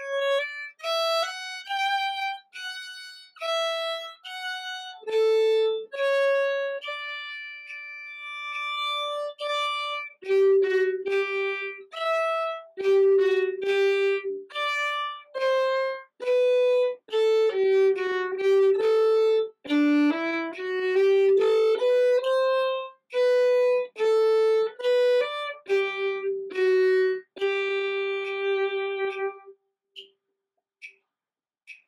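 Solo violin playing a minuet melody in separate bowed notes, ending on a long held note near the end.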